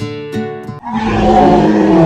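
Edited-in music with plucked guitar-like notes, cut off about a second in by a young woman's loud, drawn-out scream.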